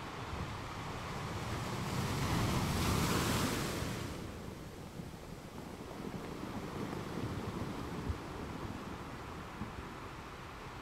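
Wind blowing over the microphone: a gust swells about two seconds in, peaks near three seconds and dies away by four, over a steady hiss and low rumble. There is a small knock near the end.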